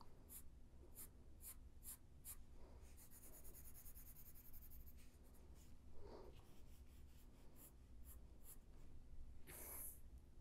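Pencil scratching faintly on paper while shading a drawing: a few short strokes in the first two seconds, a longer continuous stroke a few seconds in, and a louder stroke or rub near the end.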